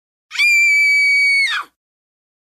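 A woman's high-pitched damsel scream, held on one pitch for just over a second, sliding up as it starts and dropping away at the end.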